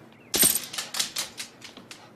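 A dog's claws clicking on a hard floor as it walks away: a quick run of light clicks, about five a second, fading as it goes.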